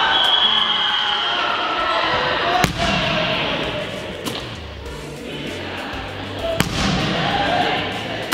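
A soccer ball slammed hard onto a hardwood sports-hall floor twice, about four seconds apart, each a sharp smack, over steady background music.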